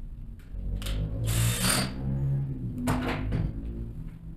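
Cordless drill-driver running in two short spurts, tightening terminal screws on a DIN-rail circuit breaker.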